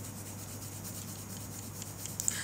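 Orange colored pencil shading on paper: a steady scratchy rubbing made of quick back-and-forth strokes.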